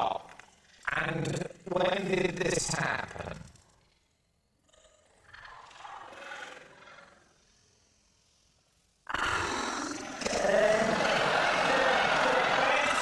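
Loud laughter from the people on the show, then a faint lull. About nine seconds in, a sudden loud burst of laughter from the studio audience.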